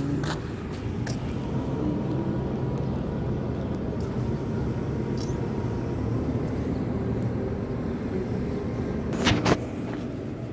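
Steady low rumble of a motor vehicle engine running, with a few short knocks near the end.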